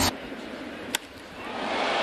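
Ballpark crowd noise with a single sharp crack of a bat hitting a baseball about a second in, the crowd swelling after the hit.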